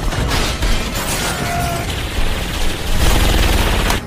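Action-film sound effects of an explosion and crashing metal and debris, a dense, loud rumble of crashes that cuts off suddenly at the end.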